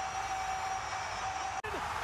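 Meerkat giving one long, steady, high-pitched call over a rush of background noise; it cuts off suddenly about one and a half seconds in.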